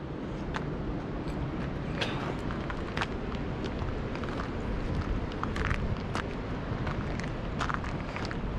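Steady rush of shallow creek water running over a riffle, with scattered footsteps and small clicks on the stony bank.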